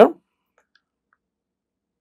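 Near silence after a spoken word, broken by a few faint, small clicks.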